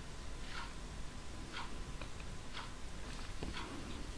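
Faint ticking of a clock, evenly spaced at about one tick a second.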